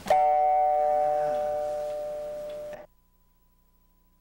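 Dobro (resophonic guitar) chord struck once as a harmonic, with the palm and picks hitting the strings together. It gives a bell-like chime that rings and slowly fades for nearly three seconds, then cuts off suddenly.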